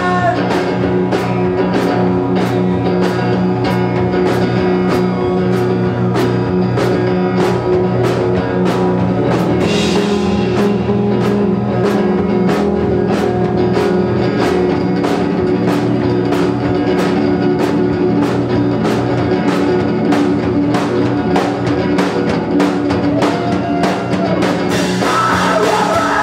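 A rock band playing live: electric guitar and drum kit, with a cymbal struck about twice a second through a mostly instrumental passage. Singing comes back in near the end.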